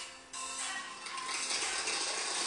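A small group clapping, heard through a television speaker, a dense crackling patter that starts after a brief dip near the beginning.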